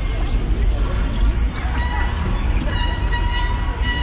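Outdoor city-park ambience: a steady low rumble under faint distant voices. A sustained pitched tone comes in about halfway through and holds.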